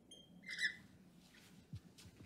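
Dry-erase marker squeaking on a whiteboard as it writes: a short squeak just after the start and a louder squeaky stroke about half a second in, followed by fainter strokes and a soft thump near the end.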